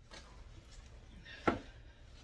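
Handling noise as a crocheted cover is pulled off a plastic milk-crate stool with a wooden top, with one sharp knock about one and a half seconds in.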